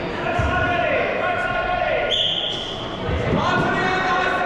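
A short, single referee's whistle blast about two seconds in, the start signal for the opening rush, among drawn-out shouts from players and thuds of feet and balls in a large echoing hall.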